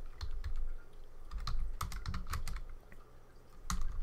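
Typing on a computer keyboard: irregular key clicks, with a short pause a little before the end.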